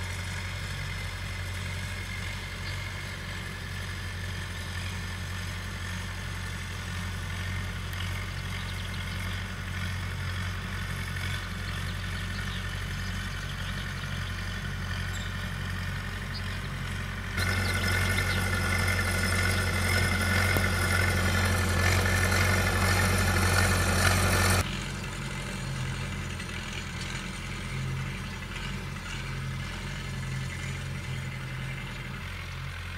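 Zetor 4011 tractor's diesel engine running steadily while it pulls tine harrows across tilled soil. A louder stretch cuts in suddenly about halfway through and cuts out again some seven seconds later.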